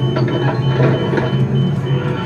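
Steady low drone of an Airbus A330-200 passenger cabin. A high tone pulses through it about four times a second.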